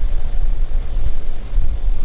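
Loud, uneven low rumble that rises and falls throughout, with no voice over it.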